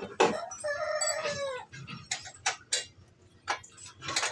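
A rooster crowing once, a long call that drops in pitch at its end, over the first second and a half. Then a few sharp metal clinks of wrenches working on the bolts.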